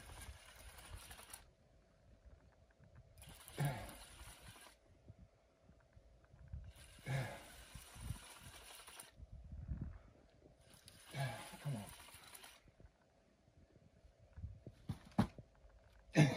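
Mostly quiet background broken by a few brief, faint murmurs of a man's voice, with low rumble.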